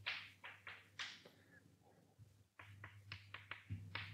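Chalk writing on a blackboard: a series of short, faint scratches and taps as symbols are written, in two clusters with a pause of about a second in the middle.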